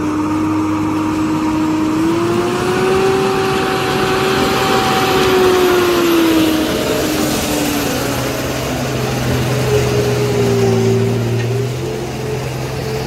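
Heavy Tata multi-axle diesel truck labouring slowly through deep mud, its engine running loud and steady. The engine note rises about two seconds in and drops as the truck passes close by, then settles to a lower steady drone.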